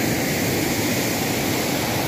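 Steady rushing of a fast mountain river running white over rocks.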